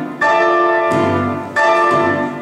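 Cello and piano playing classical chamber music: sustained chords with a bell-like ring, newly struck just after the start and again near the end.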